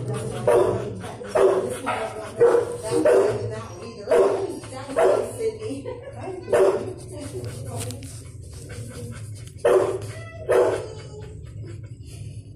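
Dogs barking in a shelter's kennels, about one bark a second with a lull in the middle, over a steady low hum.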